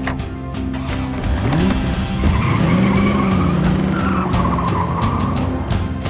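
DeLorean DMC-12 pulling away: the engine revs up about a second in, then holds while the tyres squeal for a few seconds, over background music.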